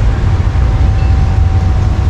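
Wind buffeting an action camera's microphone: a loud, uneven low rumble, with a faint steady high tone running through most of it.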